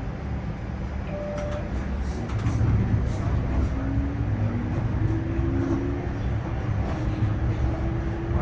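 Inside a TTC Flexity Outlook streetcar pulling away and gathering speed: a steady low rumble of the car running on its rails, with a faint electric motor whine that climbs in pitch over the second half.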